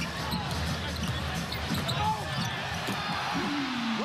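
Live basketball game sound in an arena: a steady crowd murmur, with a basketball being dribbled and sneakers squeaking on the hardwood court.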